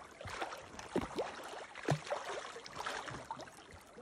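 A hooked fish splashing at the surface of shallow river water as it is played toward the bank, with a few short splashes in the first two seconds over a steady wash of water.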